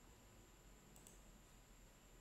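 Near silence with faint room hiss, and a quick double click about halfway through, as from a computer mouse or trackpad.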